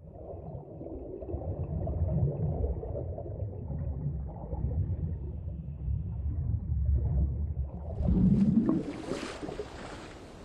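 Deep rumble that swells and wavers. About eight seconds in comes a louder crack with a rising sweep, like a thunderclap, which gives way to a fainter steady hiss like rain.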